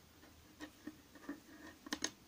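Metal knitting needles clicking faintly against each other as stitches are knitted: a few irregular light ticks, the loudest near the end.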